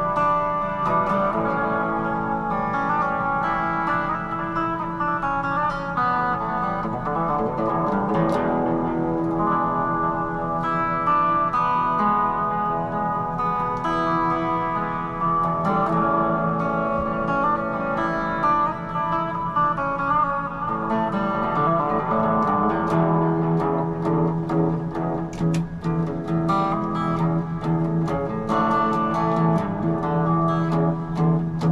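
Electric guitar playing a solo, with held notes and chords ringing throughout.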